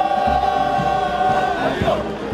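Parade marching music: one long held note, which breaks off near the end, over a steady bass drum beat of about two beats a second.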